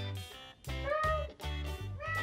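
Background music with a steady beat, and a single drawn-out meow that rises and falls in pitch, starting just under a second in.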